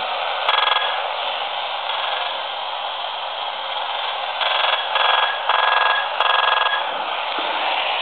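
AM radio tuned between stations giving a steady static hiss, broken by buzzing bursts of interference each time a video recorder's remote control is pressed near it. There is one short buzz about half a second in, then four more in quick succession from about four and a half seconds.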